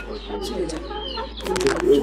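Domestic chickens clucking, with short, irregular calls.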